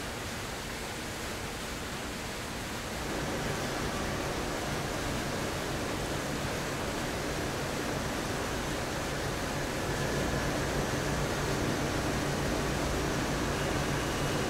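Steady rush of running and splashing water from a banana washing tank. It grows a little louder about three seconds in.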